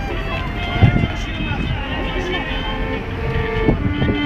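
People talking close by while a violin plays only a few scattered notes, one of them held with vibrato about three seconds in. There is a short bump about a second in.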